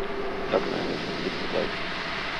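Steady hiss of launch-pad ambient sound around a fully fuelled Falcon 9 venting propellant vapour in the last seconds before ignition, with a faint steady tone under it.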